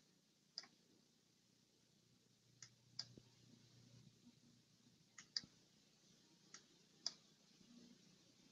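Near silence broken by about seven faint, irregularly spaced clicks from computer use, mouse and keyboard.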